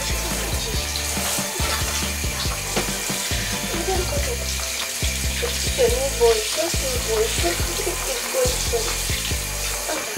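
Water spraying from a handheld shower head onto a wet cat in a bathtub, a steady hiss. Background music with a repeating bass line plays alongside it.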